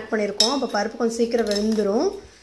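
A steel ladle stirring thin dal in a steel pot, with one sharp clink against the pot about half a second in.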